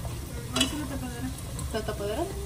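Food frying in hot oil in a deep pot while metal tongs move it about. There is a sharp click of the tongs against the pot about half a second in.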